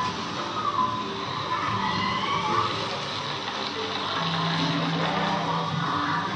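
Ambient soundtrack of the Na'vi River Journey boat ride: soft music with gliding high tones over a steady rushing haze of water in the ride's channel.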